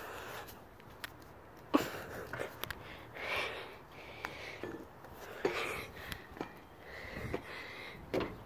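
A child climbing a metal playground ladder onto a perforated steel platform: scattered faint knocks and clicks of hands and feet on the rungs, with soft breathing between.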